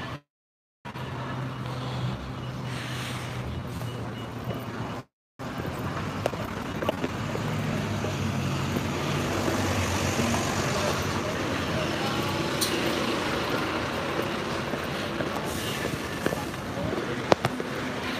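Urban street noise: road traffic running past with a low engine hum and people talking in the background. The sound cuts out completely twice, briefly near the start and again about five seconds in.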